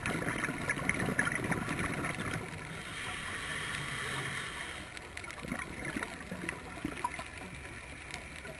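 Scuba regulator breathing heard underwater through a camera housing: a bubbling, crackly exhalation for the first couple of seconds, then a steady inhalation hiss, with scattered clicks through the rest.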